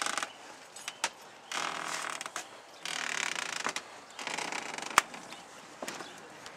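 Handling noise from a handheld camcorder rubbing and bumping against clothing: several bursts of scuffing with scattered clicks, and one sharp knock about five seconds in.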